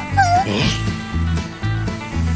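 Cartoon background music with a steady bass beat, about two beats a second, and a short, wavering high-pitched vocal whine near the start.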